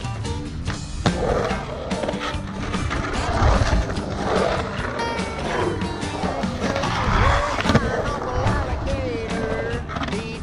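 Skateboard wheels rolling and carving through a concrete bowl, the rumble swelling on each pass down the transitions. Near the end it gets loudest as the board hits the coping on the bowl's lip. A rock song plays over it.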